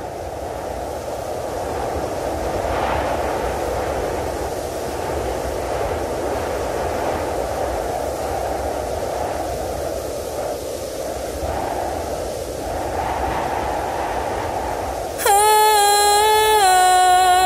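A steady low rushing rumble fades in and swells and ebbs. About a second before the end, a loud sustained horn-like tone cuts in over it.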